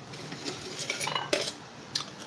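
Stainless steel bowls and utensils clinking and knocking on a kitchen counter: a few light clinks, then a sharper knock past the middle with a brief metallic ring, and another knock near the end.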